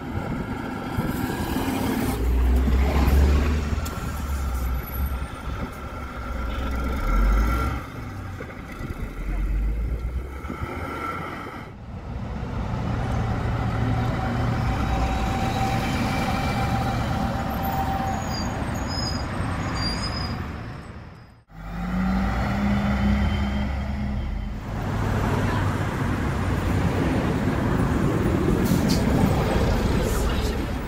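Ikarus 280 articulated city buses' diesel engines running, with a deep rumble that swells as one drives past, then steady engine noise of buses standing at stops.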